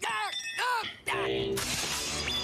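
Animated cartoon soundtrack playing: a character's voice in quick arching exclamations, then a short held musical chord about a second in.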